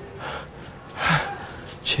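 A man gasping, two heavy breaths about a second apart, in shocked relief.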